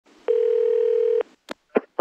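A telephone line tone: one steady mid-pitched beep about a second long over line hiss, then two short clicks as the call connects.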